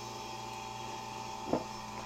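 Steady low hum of machinery running in a motor yacht's engine room, with a faint held higher tone over it. A brief soft knock about three quarters of the way through.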